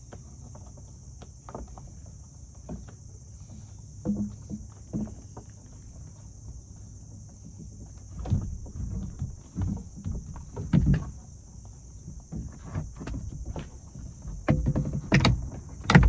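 A long-reach lockout tool tapping and scraping against the inside of a car door as it is worked toward the interior door handle: scattered knocks and clicks, busier and louder in the second half. Crickets chirp steadily in the background.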